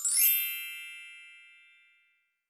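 A single bright, bell-like chime sound effect, struck once with a brief high shimmer, ringing on and fading away over about two seconds.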